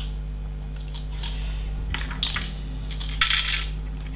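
Small plastic LEGO bricks clicking and clattering as they are handled and pressed together, in three short clatters about a second apart, over a steady low hum.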